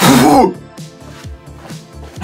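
A man's short, harsh vocal noise, like a strained throat-clearing grunt, in the first half-second, then background music with a steady beat.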